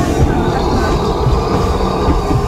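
Passenger train car running along the track: a steady, loud low rumble of wheels on rail.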